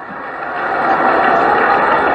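A large crowd's voices blended into one steady sound, growing louder over the first second and then holding.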